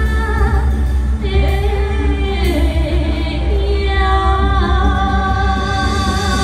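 Women singing a song into microphones with a live Chinese instrumental ensemble, over a strong steady bass. Their long held notes waver with vibrato, and some glide downward.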